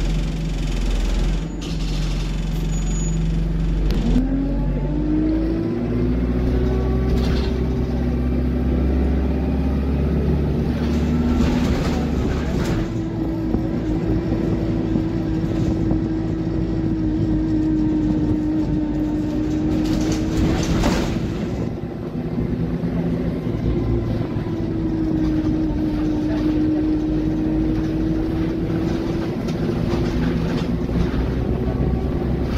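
Diesel bus heard from inside the passenger saloon, idling with a low hum, then pulling away about four seconds in with a rising whine. It settles into a steady engine drone and transmission whine as it runs along, with a few short rattles from the bodywork.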